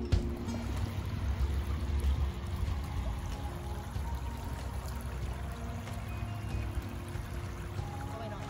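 Shallow creek water trickling over flat rock, with faint background music.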